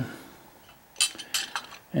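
Teaspoon clinking against a china teacup: a quick run of light clinks about a second in.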